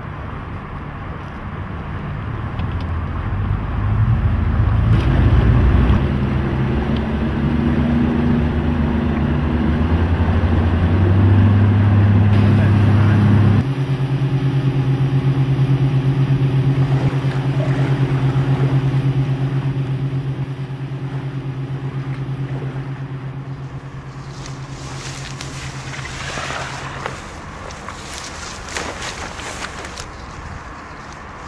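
Outboard motor of an inflatable rescue boat running, its pitch climbing over the first dozen seconds, then running steadily until it fades near the end. Wind buffets the microphone in the last few seconds.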